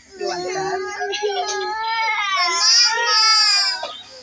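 A young child crying: one long, wavering wail that grows louder in its second half.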